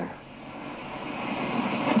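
A steady, noisy drone on the film soundtrack that grows gradually louder.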